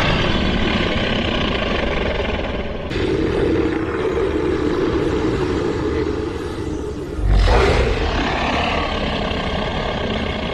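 Anime sound effects for the four-tailed fox-chakra form: a continuous roaring rumble with a heavy, deep boom about seven seconds in.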